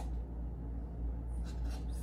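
Felt-tip permanent marker writing on a foam cup, with a few short strokes in the second half, over a steady low hum.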